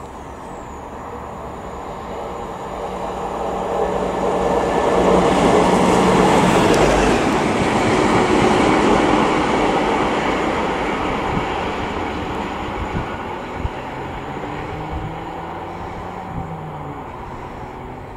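Mainline diesel locomotive running light engine past: its engine and wheel noise rise as it approaches, are loudest about five to nine seconds in, then fade as it draws away, with a few clicks of wheels over rail joints in the second half.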